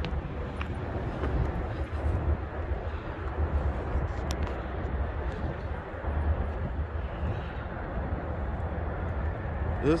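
Steady outdoor background noise: a low, uneven rumble with a faint wash of distant city sound above it.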